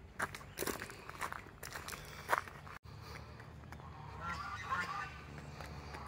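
Footsteps crunching on gravel, then ducks quacking in a short cluster of calls about four to five seconds in.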